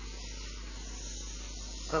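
Steady hiss of background noise with a low hum underneath, no distinct sounds in it; a voice starts right at the end.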